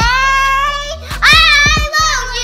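A young girl squealing in two long, high held notes, the second louder, with background music underneath.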